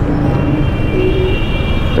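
Slow, congested city traffic heard from a Suzuki Gixxer FI motorcycle: its engine and those of the buses around it running at low speed in a steady hum, with a thin high whine coming in shortly after the start.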